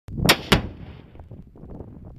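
A 450 g explosive charge detonating: two sharp reports about a quarter second apart, followed by a rolling rumble that dies away over about a second.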